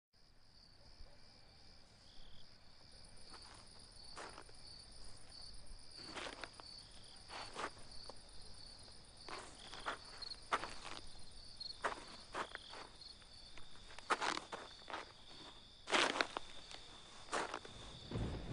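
Outdoor ambience of insects chirping in a steady high trill, with irregular short crunching steps every second or two that grow louder toward the end.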